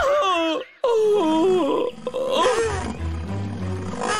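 Cartoon soundtrack: background music under a character's wordless gliding cries and grunts, with a brief break just before the one-second mark.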